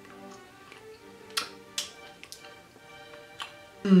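Background music with steady held tones, and four short sharp clicks: two between about one and a half and two seconds in, one a little later, and one near the end.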